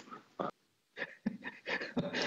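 A man's soft, breathy chuckles: a few short separate bursts, faint, with dead silence between them.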